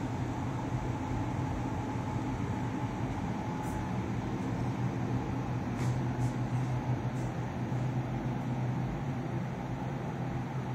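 Steady low mechanical hum with a constant background rush, like shop machinery or ventilation running, and a few faint ticks in the middle.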